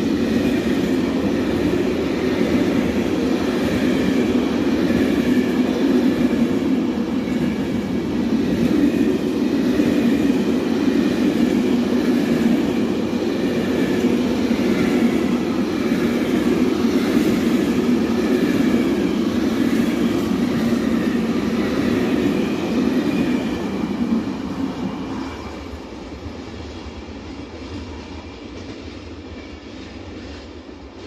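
Freight train of empty container flat wagons rolling past at speed: a steady loud rumble of wheels on rail, with faint high ringing tones above it. The sound dies away from about 25 seconds in as the last wagon passes.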